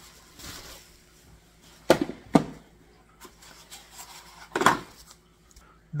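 Unpacking noise: bubble wrap rustling softly around a plastic hydroponic light panel, with three sharp knocks of hard plastic on the countertop, two close together about two seconds in and one near the end.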